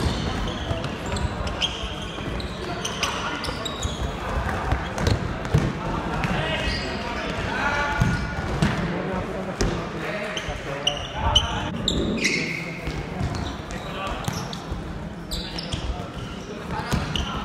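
Futsal being played in an echoing sports hall: the ball is kicked and bounces on the hard floor, with irregular thuds throughout, while players and onlookers shout and call out.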